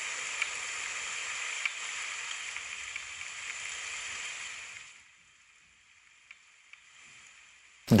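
Heavy-rain soundscape from the Muse S Athena meditation app: a steady hiss of rain that fades to near silence about five seconds in. In this neurofeedback meditation, heavy rain is the app's signal of a busy mind with lots of thoughts.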